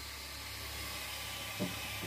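Steady, even hiss of outdoor background noise picked up by a phone microphone, with a faint short sound near the end.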